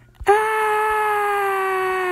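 A girl's voice holding one long "aaah" cry for nearly two seconds, its pitch sagging slowly and dropping away at the end.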